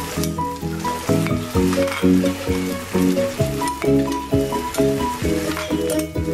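Instrumental background music: a quick repeating pattern of short melodic notes over a steady bass. Beneath it, a hiss with fine crackles from food frying in a hot oiled wok.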